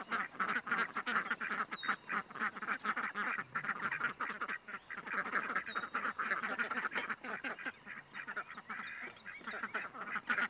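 A flock of domestic ducks quacking continuously, many short calls overlapping in a busy, unbroken chatter.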